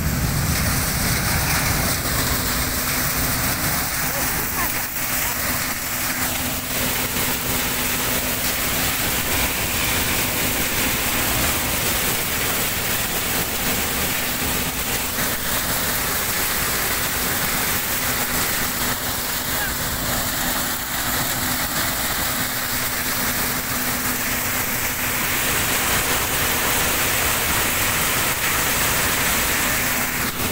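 Tractor-driven chickpea threshing machine running steadily: a loud, even mechanical din with a constant low hum, and the hiss-like rattle of chickpeas being shaken over its perforated steel sieve.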